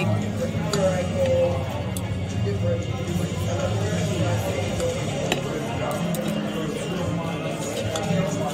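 Background music with a steady, sustained low accompaniment and a wavering melody, over voices, with a few light clinks of a knife and plate.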